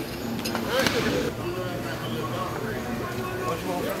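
Background chatter: several people talking at once, none of it clearly spoken to the camera.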